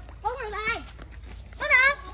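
A young child's high, wordless calls: a wavering cry, then a louder, shorter squeal near the end.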